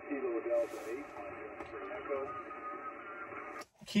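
Yaesu FT-991 transceiver receiving a weak single-sideband voice on the 20-metre band through steady band noise, with the thin, narrow sound of SSB audio: a distant station answering a CQ call, too faint to copy fully. The receive audio cuts off suddenly near the end.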